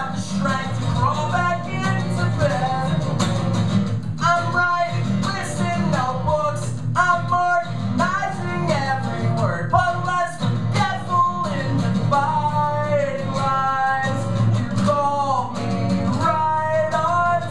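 A man singing live while strumming an acoustic guitar, a solo acoustic performance with the voice carrying the melody over steady strumming throughout.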